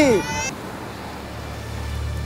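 A child's chanting voice ends in a quick downward slide in pitch, then gives way to a steady rush of wind and surf on the beach.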